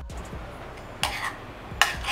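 A metal spoon stirring thick flour paste in a small metal saucepan, scraping against the pan twice: about a second in and again near the end.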